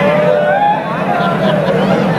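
A man's voice over a public-address loudspeaker in long, gliding pitched notes, over a steady low hum.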